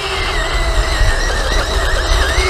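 SG1203 Ripsaw RC tank's electric drive motors and gearbox whining as it drives on its tracks, a thin high steady whine that wavers slightly near the end, over a low rumble.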